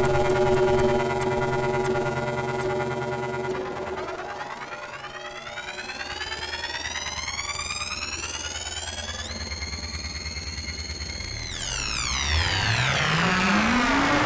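Improvised electronic synthesizer music. It opens with a held drone of several steady tones. After about three and a half seconds many tones glide upward together, hold high for about two seconds, then sweep back down, while a low tone rises near the end.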